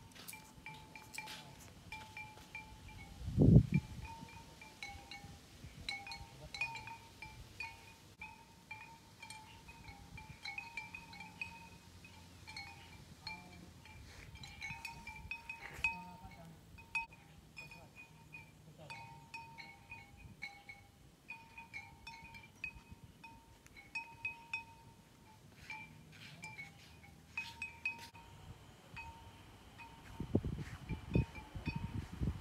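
Small metal wind bells tinkling in the breeze: a steady scatter of light, irregular strikes ringing at two pitches. A brief low thump about three and a half seconds in is the loudest sound.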